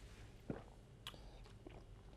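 Quiet, faint swallowing and mouth sounds from people drinking shots, with a few small clicks.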